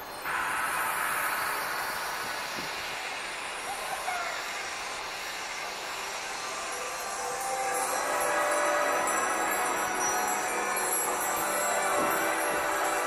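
Light-show soundtrack over loudspeakers: a sustained, shimmering wash of high tones that starts suddenly and swells louder about eight seconds in.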